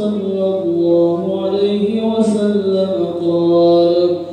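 A single man chanting in Arabic in long, held melodic notes, with a breath about two seconds in and then a long sustained note.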